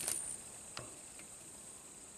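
Light clicks of test leads and a handheld clamp meter being handled: a short cluster of clicks at the start, then a couple of faint ticks. Otherwise quiet.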